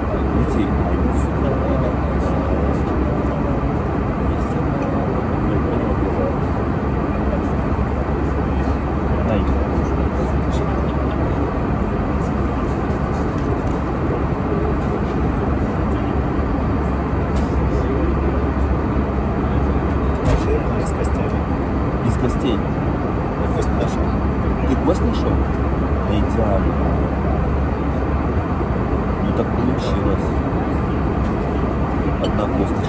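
Airliner cabin noise in flight: a steady low drone of engines and airflow.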